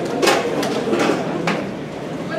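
A roomful of students clapping together on cue in a clapping game, giving a few sharp group claps at uneven intervals over a low crowd murmur.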